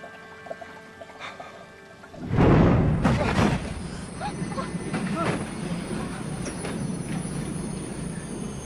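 A high-speed train carriage lurches with a sudden loud rumbling jolt a little over two seconds in, then rumbles on with a thin high steady whine, like brakes or wheels on the rails, under film score music.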